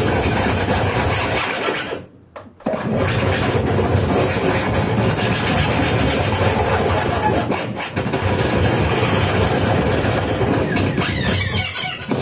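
Live experimental noise music from electronics and turntables: a dense, grinding wall of noise that cuts out abruptly for about half a second around two seconds in, then resumes. Near the end, warbling, sweeping high tones come in over it.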